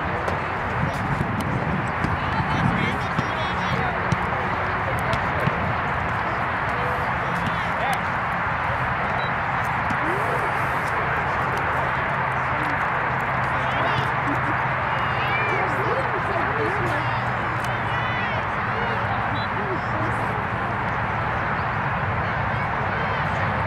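Indistinct chatter of sideline spectators and players at an outdoor soccer game, a steady wash of distant voices. A few sharp knocks stand out in the first several seconds.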